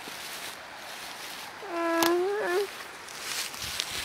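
A young person's high, drawn-out wordless vocal sound about two seconds in, held steady and then wavering. Underneath it, plants rustle and feet step through dense undergrowth.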